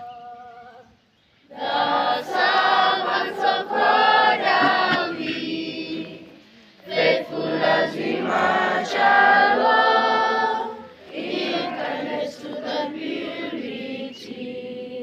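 A group of schoolchildren singing together without accompaniment, in three long phrases with short pauses between them. The loud singing starts about a second and a half in.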